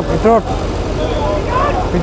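Men's voices calling out over the steady low drone of a JCB backhoe loader's diesel engine.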